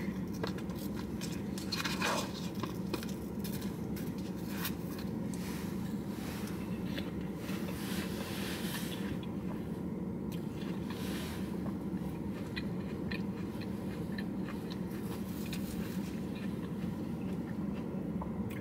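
A fork stirring, scraping and tapping in a paper cup of cut fruit, and chewing, faint over a steady low hum inside a car.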